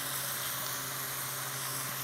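Chicken and sliced cabbage sizzling steadily in a hot stainless steel frying pan as the cabbage is tipped in with tongs, over a low steady hum.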